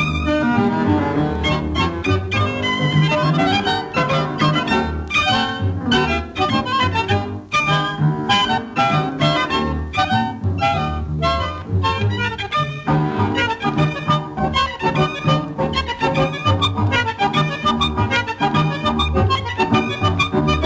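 Instrumental milonga played by a tango quintet: violins and bandoneón over a double bass, with a steady, quick beat.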